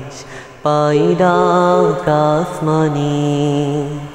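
A boy's voice singing a Bangla Islamic song (nasheed) in long, drawn-out wavering notes over a steady low drone, coming in about half a second in after a short pause.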